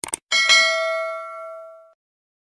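Two quick clicks, then a bell notification ding sound effect that rings on with several clear tones, fades over about a second and a half and cuts off suddenly.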